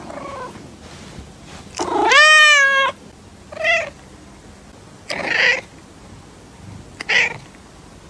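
Orange tabby cat meowing: a faint call at the start, one long, loud meow about two seconds in, then three shorter meows spaced out over the following seconds.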